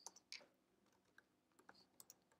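Faint typing on a computer keyboard: a handful of separate keystrokes, the strongest about a third of a second in.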